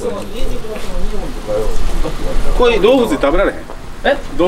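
A man talking in short stretches, with a steady low hum underneath.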